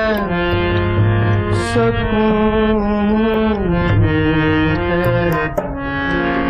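Harmonium playing a sustained melody that steps from note to note, accompanied by tabla, with deep bass-drum strokes and sharp high strokes.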